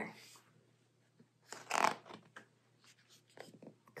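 A picture book's page being turned: one brief paper swish a bit under two seconds in, followed by a few faint taps.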